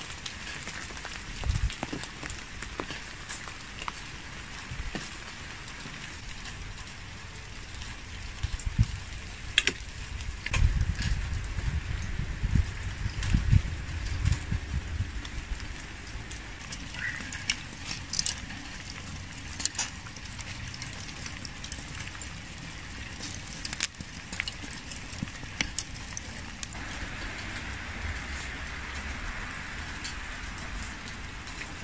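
Meat being threaded onto metal skewers: scattered light clicks and taps of the skewers and handling at the table over a soft steady outdoor hiss, with low rumbling thumps through the middle.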